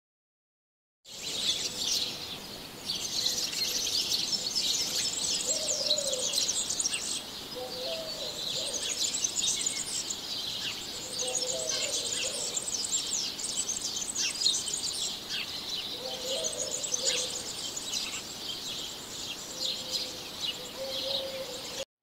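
Many birds chirping and calling together in a dense chorus of quick, high chirps, with a few lower warbling calls now and then. It starts about a second in and cuts off abruptly near the end.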